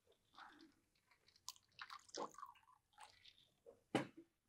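Faint handling noises as a man reaches for water to drink: small scattered clicks and rustles, then a sharp knock near the end, the loudest sound.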